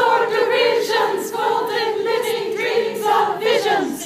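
Women's chorus singing a cappella, holding a long sustained chord that slides down in pitch just before the end.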